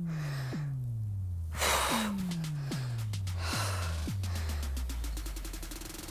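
Background workout music with a steady beat and falling bass notes, and a sharp breath exhaled under exertion about a second and a half in.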